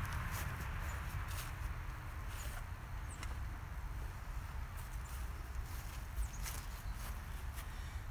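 A steady low rumble, with a few faint, scattered ticks and rustles as a man steps across grass and lifts plastic toy tractors out of an aluminum jon boat.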